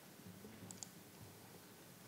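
Near silence: faint room tone with two quick, faint clicks a little under a second in.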